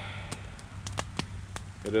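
Wood campfire crackling, with several sharp, irregularly spaced pops and snaps.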